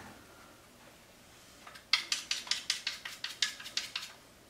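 Chalk being rubbed on a pool cue's tip: a quick run of about a dozen short, sharp scrapes, starting about two seconds in.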